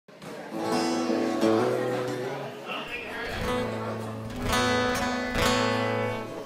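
Acoustic guitar strumming a few sustained chords, with the chord changing about every second and a half.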